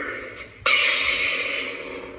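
Lightsaber sound font played through the hilt's small speaker: a sudden ignition sound about two-thirds of a second in, settling into a steady buzzing hum that slowly fades.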